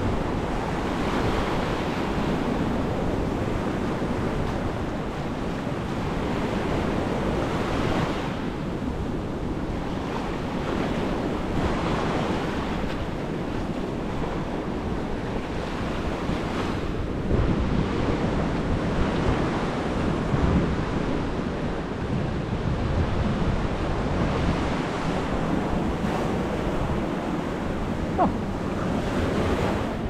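Ocean surf washing up on a sandy beach, swelling every few seconds, with wind buffeting the microphone.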